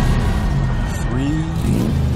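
Car engines revving at a street-race start line during the countdown. The pitch swells up and down in the second half over a steady low rumble.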